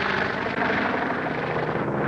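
Biplane's propeller engine droning steadily in flight.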